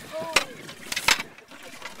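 A few sharp knocks as a landing net holding a freshly caught shark bumps against a boat's deck: one about a third of a second in, then two close together about a second in. Faint voices underneath.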